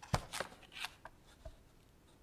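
Papers handled at a desk: a few short, faint rustles and taps, then a soft low thump about one and a half seconds in.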